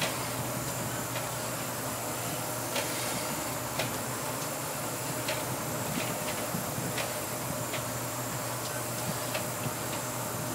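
Steady drone of a pilot boat's engines heard from inside the wheelhouse, with a faint steady hum under it. About eight brief sharp ticks come at irregular moments.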